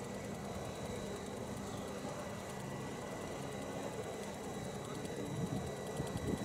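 Pratt & Whitney PT6A turboprop engine of an Air Tractor AT-802 heard from a distance on final approach: a faint, steady drone with a thin, high, steady whine over it.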